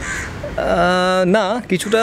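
A man's voice holding one long, level vowel for almost a second, like a drawn-out hesitation sound, then a few quick syllables.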